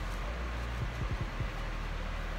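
Electric fan running steadily: an even noise with a low, steady hum underneath.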